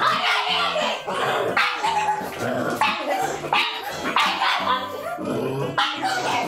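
A pug barking over and over, hard and insistent, the barks somewhat growl-like.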